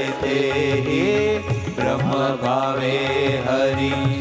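Devotional chanting sung to a melody over a steady held instrumental drone, continuous throughout.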